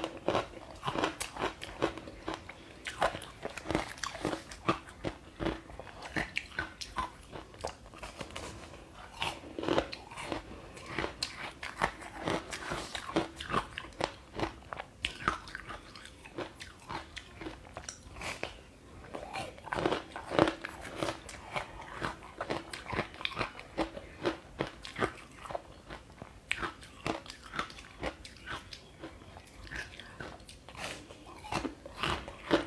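Close-up crunchy biting and chewing of a hard yellow slab dipped in sesame seeds: many irregular sharp crunches all through, with louder bites now and then.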